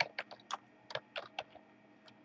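Computer keyboard being typed on: about eight quick, irregular keystrokes that stop about a second and a half in.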